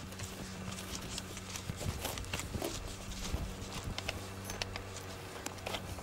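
Scattered light clicks and taps of hands working a plastic star-knob hanger bolt and the metal strip that clamps a poly greenhouse cover to a raised bed's edge, over a steady low hum.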